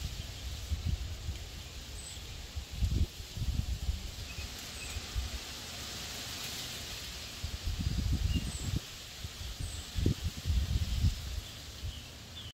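Outdoor nature ambience: leaves rustling in a breeze, with a few faint bird chirps. Irregular low gusts of wind buffet the microphone about three seconds in and again several times in the last third.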